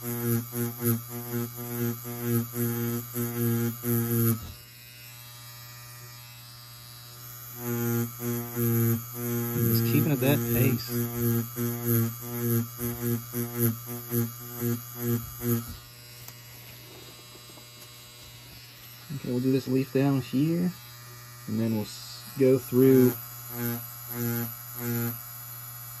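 Tattoo machine buzzing as the needle is worked in a pendulum shading motion, its loudness pulsing a few times a second. It runs for about four seconds, stops, then runs again for about eight seconds before stopping.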